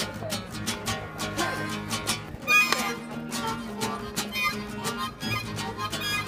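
Acoustic guitar strummed in a steady rhythm while a harmonica plays a melody over it, live street music.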